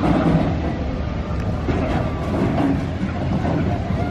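Big Thunder Mountain Railroad's mine-train roller coaster rolling along its track across a wooden trestle, a steady low rumble.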